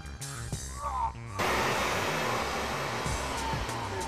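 A torch flame hissing steadily as it jets from the nozzle, starting suddenly about a second and a half in, over background music.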